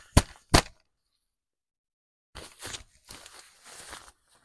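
Two sharp slaps of a hand swatting at a fabric jacket to knock cobwebs off it, then after a short pause the cloth rustling as it is handled.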